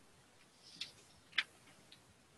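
Near silence on a call line with faint hiss, broken by two short faint clicks about half a second apart, the second louder.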